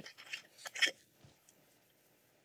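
A few faint short clicks and smacks in the first second, then near quiet.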